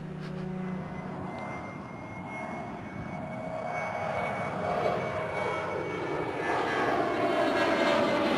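A steady engine-like drone that grows gradually louder throughout, like an aircraft approaching.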